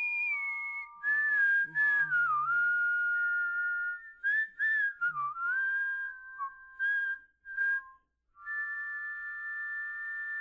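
Several overdubbed tracks of human whistling hold long notes together in close chords and slide between pitches, with breath noise between phrases. The sound drops out briefly about eight seconds in, then returns on a held chord.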